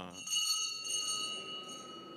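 Altar bells rung in a quick series of strikes over the first second and a half, then left ringing and fading: the signal that marks the elevation of the chalice at the consecration.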